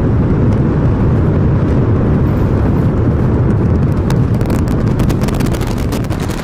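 SpaceX Super Heavy booster's 33 Raptor engines firing during ascent: a loud, deep, continuous noise, with sharp crackling coming in about four seconds in.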